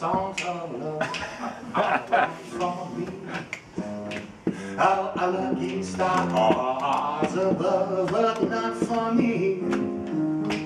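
A male jazz singer vocalizing into a microphone, accompanied by an upright piano, with held piano chords that fill in from about four seconds in. There is a short laugh near the end.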